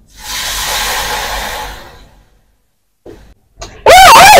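A hiss that swells quickly and fades out over about two seconds, then stops dead. A voice starts loudly just before the end.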